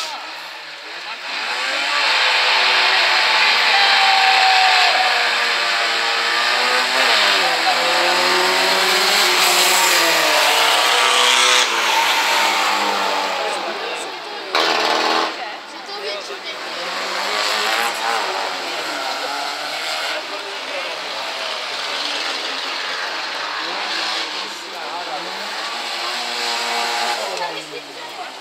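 Several rallycross car engines revving hard as the cars pull away and race, growing loud about two seconds in, with their pitch repeatedly rising and falling as the drivers accelerate and change gear. A short loud burst comes about fifteen seconds in.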